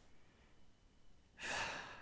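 A man sighs once, a single breathy exhale about one and a half seconds in, after a near-quiet pause.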